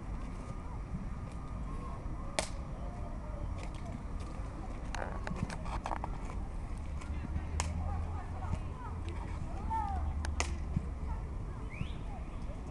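Football pitch ambience: distant shouts of young players over a steady low rumble, with a few sharp knocks of the ball being kicked, the clearest about two seconds in, near the middle and near the end.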